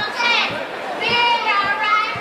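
High-pitched voices giving several short shouts, each lasting about half a second, one after another.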